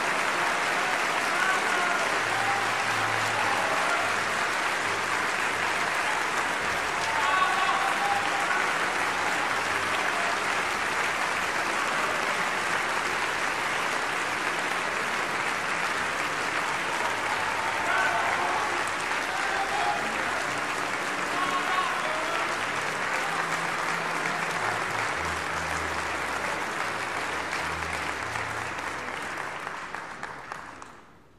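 Opera house audience applauding a soprano's aria, with steady dense clapping and scattered shouted calls from the crowd every few seconds.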